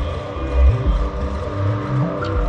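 Background music: deep bass notes that shift every half second or so under steady higher held tones.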